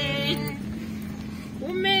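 A woman's held sung note ends about half a second in, leaving the low, steady noise of a car's cabin on the move, road and engine hum. Her singing starts again near the end.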